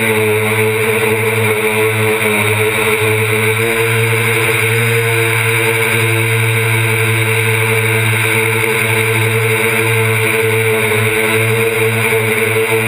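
Brushless motors and propellers of a DJI Flame Wheel F450 quadcopter, heard from a camera on the airframe, buzzing steadily and loudly as the drone climbs, the pitch wavering only slightly.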